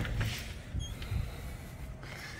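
An interior door being opened and passed through: soft low knocks and rustling, with one brief, faint high squeak a little under a second in.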